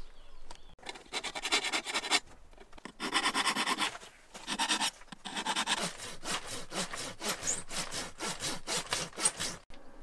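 Hand saw cutting a dry branch of firewood: a few runs of longer rasping strokes, then quicker short strokes of about three a second in the second half, stopping just before the end.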